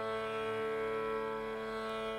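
Carnatic violin holding one long, steady note in raagam Kalyani, reached by a glide up just before, over a steady drone.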